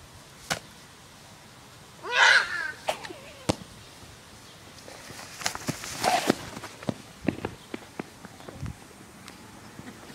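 A short yell about two seconds in, followed by scattered knocks, clicks and rustling as the handheld camera is moved about close to the person.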